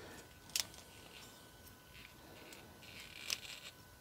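Faint handling of a plastic Transformers Beast Wars Cheetor figure as its parts are moved: two sharp plastic clicks, one about half a second in and another a little before the end, with light scuffing between.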